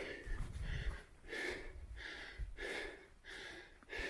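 A man's hard breathing while hiking uphill, about six quick breaths in and out over the few seconds. A low rumble on the microphone in the first second.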